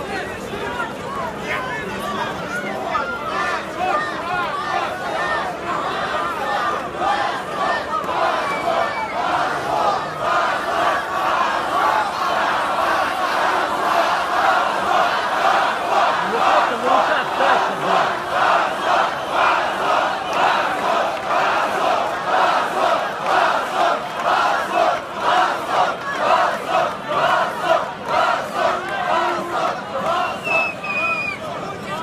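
Large crowd of protesters shouting, growing louder over the span and falling into a rhythmic chant, about one and a half shouts a second, in the second half.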